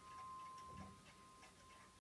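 The last high note of an upright Kemble piano dying away, very faint, with a clock ticking softly under it.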